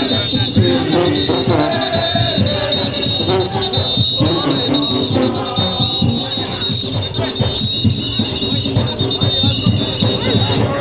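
Junkanoo parade band playing: drums, cowbells and brass horns in a steady rhythm, with crowd voices mixed in.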